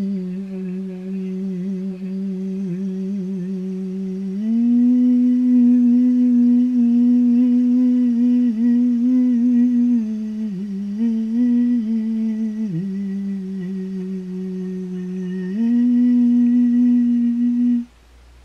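A single voice humming a drawn-out mantra tone in long held notes. It steps up to a higher note about four seconds in, wavers and dips back down between about ten and thirteen seconds, rises again near the end and breaks off abruptly.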